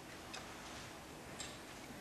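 Quiet hall with a faint steady hiss and a few faint, scattered small clicks and knocks, such as players shifting instruments or chairs; no music is playing.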